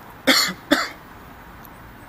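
A man coughing twice in quick succession, two short sharp coughs.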